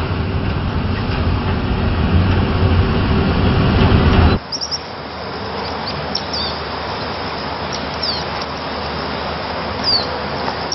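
Steady low rumble of a car's interior on the move. About four seconds in it cuts off abruptly to quieter outdoor air with birds chirping a few times, each a short falling chirp.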